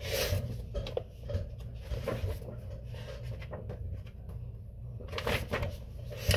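A paper picture book being handled and its page turned: a rustle at the start, a few light taps through the middle, and a cluster of rustling and knocks near the end. A steady low hum lies under it.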